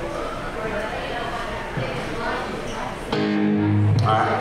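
Background talking, then about three seconds in a loud sustained note rings out from an amplified electric guitar.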